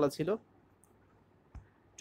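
A voice trails off, then in the pause comes a single sharp click about one and a half seconds in.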